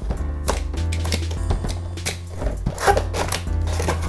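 Cardboard box being opened by hand: tape slit and the top flaps pulled open, a run of sharp scrapes, taps and crinkles, over background music with a steady bass.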